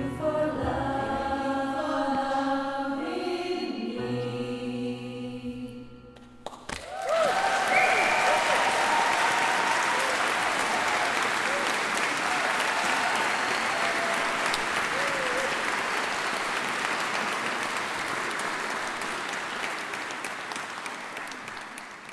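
A women's choir sings held chords that end about six seconds in. The audience then breaks into applause with a few cheers, and the applause fades out near the end.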